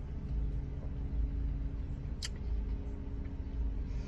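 Steady low rumble and faint hum of a car idling, heard from inside the cabin, with one short click about two seconds in.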